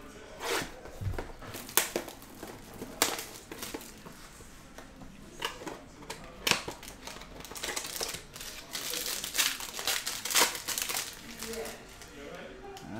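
A sealed Panini Prizm trading-card box being opened by hand. Plastic wrap and card stock crinkle and tear, with scattered sharp clicks and snaps that grow busier a few seconds before the end as the cards are pulled out.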